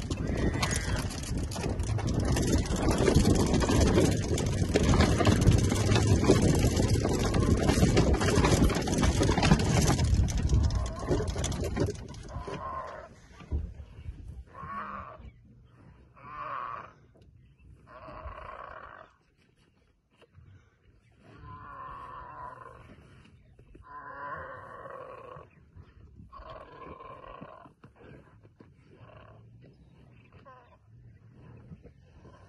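A loud, even rushing noise of wind and a moving safari vehicle for the first dozen seconds. It drops away suddenly, and short, harsh animal calls follow, each about a second long and repeated every one to three seconds, from lionesses on a freshly caught warthog.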